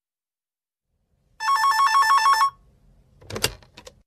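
A telephone rings once with a fast electronic trill lasting about a second. About a second later comes a short clatter, the handset being picked up to answer the call.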